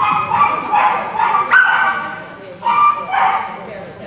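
Small dog barking in a run of high-pitched yips, in several bursts with a sharp one about one and a half seconds in and another near the end.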